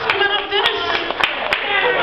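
The karaoke backing track cuts off, followed by a few scattered hand claps and people talking.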